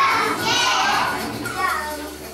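Young children's voices calling out and chattering, several at once, in a crowded room. The voices ease off toward the end.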